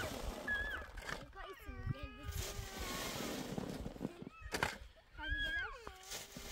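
A cat meowing several times in short, high, arching calls, with a few sharp thuds from digging in dry soil.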